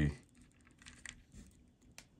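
A soldering iron held on copper desoldering braid over a solder joint: a few faint, sparse ticks and crackles over a quiet background, with a short sharp click at the end.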